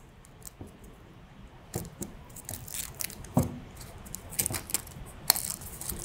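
Foil capsule being torn and peeled off the neck of a sparkling wine bottle: scattered soft crinkles and small clicks, with a few sharper ones.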